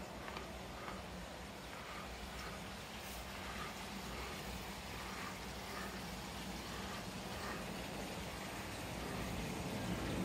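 Koi pond waterfall trickling steadily, over a low steady hum.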